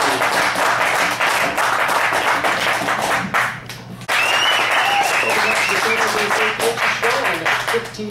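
Crowd cheering and applauding with voices mixed in, dipping briefly about three and a half seconds in and then resuming, with a held high tone for a second or so after the dip.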